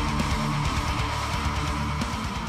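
Guitar strumming chords, the notes ringing on steadily.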